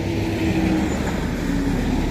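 Engine of road-paving machinery running steadily, a low drone whose pitch dips slightly partway through.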